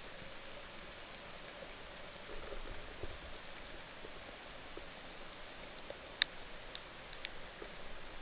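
Underwater ambience recorded from a camera in its housing: a steady hiss with scattered small clicks and crackles, and one sharper click about six seconds in followed by a few fainter ones.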